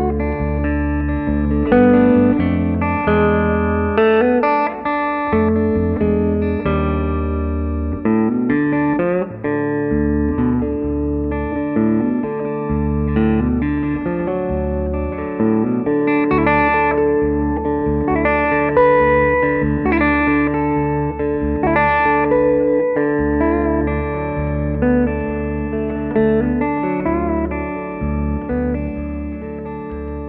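Instrumental break in a song, led by guitar playing a melodic line with bent notes over a sustained bass underneath.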